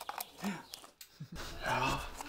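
Quiet, brief fragments of voices with a few small clicks; about two-thirds of the way in, the background changes to a steady low room rumble.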